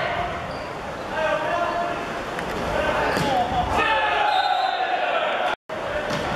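Volleyball being struck and thudding in an echoing sports hall, with a clear hit about three seconds in, over shouting and calls from players and onlookers. The sound drops out briefly near the end.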